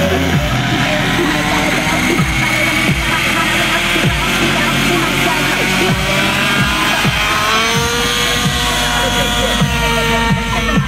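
Music with the engine and rotor of an Align T-Rex 700 RC helicopter running under it as the helicopter spins up on the ground.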